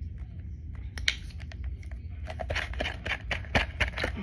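Clicks and taps of a small cup being handled and tapped over a plastic tub to get homemade fake snow out, which is stuck in the cup. A quick run of taps comes about a second in and a denser run over the second half.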